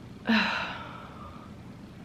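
A woman's sigh of displeasure: a brief voiced start, then a breathy exhale that fades over about a second.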